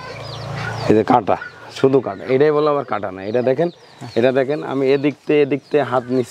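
A man talking in short phrases in a low voice.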